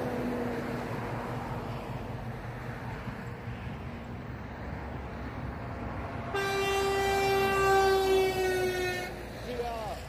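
Motorway traffic passing with steady tyre and engine noise. About six seconds in, a Mercedes-Benz Actros truck's air horn blows one long note for about three seconds, its pitch sagging slightly as the truck goes by.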